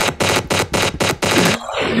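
A man laughing hard in a rapid run of loud, sharp bursts, about five or six a second, that tails off near the end.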